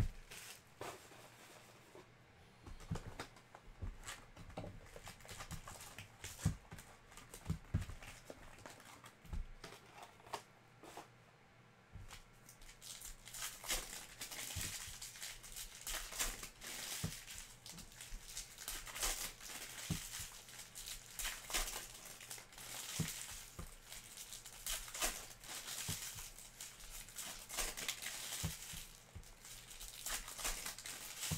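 Foil trading-card pack wrappers crinkling and tearing as packs are opened by hand. The first stretch holds only scattered light clicks and taps of cards being handled, and the foil crinkling becomes busy from about twelve seconds in.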